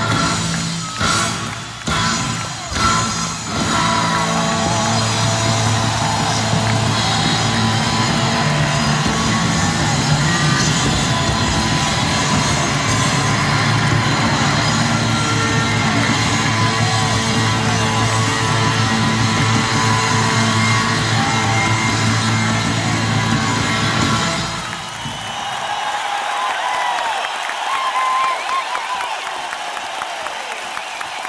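Live rock band (electric guitar, bass and drums) hammering out a few crashing stop-start hits, then holding a long, loud closing chord that cuts off abruptly about five seconds before the end. An arena crowd cheering and whooping is left after it.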